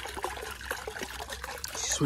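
Pond water trickling and dripping as a small mesh hand net is moved through it, with many small drips and plinks.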